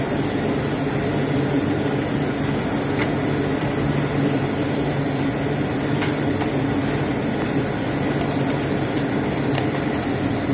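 Steady drone of factory machinery: a constant low hum under an even rushing noise, unchanging throughout.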